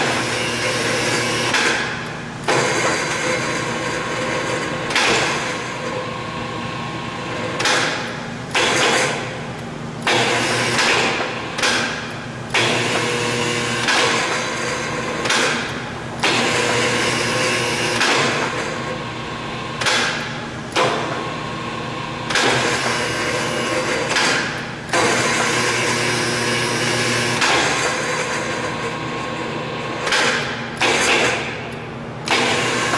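KRB programmable rebar bender's 5 hp electric drive running with a steady low hum, broken by loud mechanical surges that start sharply and fade every one to three seconds as the turntable drive cycles.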